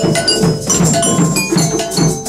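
Percussion ensemble playing a dense, continuous rhythm: hand-drum strokes under the ringing of metal bells like a cowbell.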